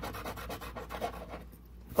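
A coin scraping the coating off a scratch-off lottery ticket in quick, even back-and-forth strokes, stopping about three-quarters of the way through.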